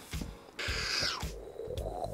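Cardboard box lid being pulled off the box, a brief hissing, sliding rush lasting under a second, with a few light handling clicks around it.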